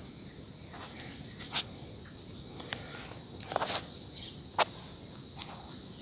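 A steady high-pitched insect chorus, with scattered crunches and snaps of dry leaves and twigs underfoot, the loudest about a second and a half in and near four and a half seconds.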